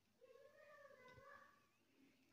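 Near silence, with one faint drawn-out animal call lasting about a second in the background.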